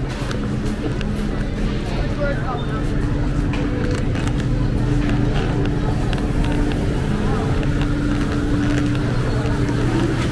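Supermarket ambience: a steady low hum with held tones, and indistinct voices in the background.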